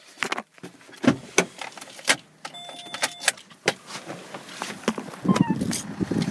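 Clicks, knocks and rustling of someone getting out of a Corsa hatchback while holding the camera, the car's door and cabin trim knocking, with a short steady electronic tone about two and a half seconds in.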